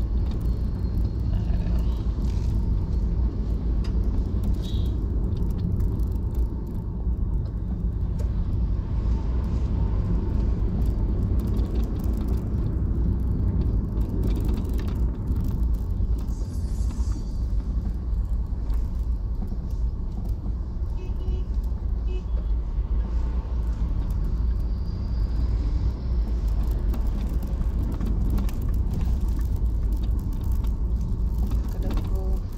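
Steady low rumble of a car driving over a rough, unpaved road, heard from inside the cabin.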